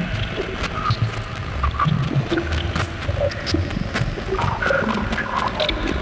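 Ambient electronic music from analog and Eurorack modular synthesizers. Short chirping blips scatter over shifting pitches above a low, irregularly pulsing bass, with sharp little clicks on top.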